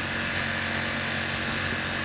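Portable generator running steadily: an even mechanical hum under a hiss.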